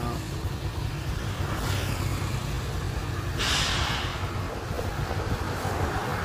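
Road traffic: a steady low engine hum, with a brief rush of noise from a passing vehicle about three and a half seconds in.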